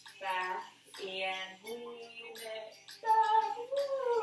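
A woman singing a slow melody in drawn-out notes; near the end one note is held and then slides downward.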